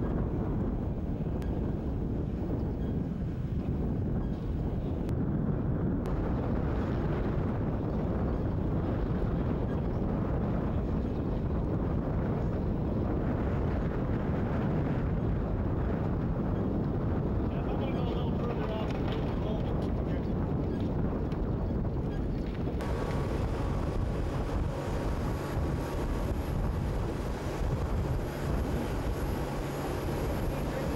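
Steady rumbling wind noise buffeting the microphone. From about 23 seconds in, the sound changes abruptly and a steady low hum runs under it.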